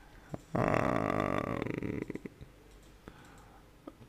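A man's drawn-out, creaky hesitation sound, like a long "e-e-e", lasting under two seconds from about half a second in, with a few soft mouth clicks around it.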